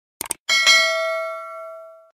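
Two quick mouse clicks, then a bright bell ding, struck again a fraction of a second later, that rings on and fades out: the notification-bell sound effect of a subscribe-button animation.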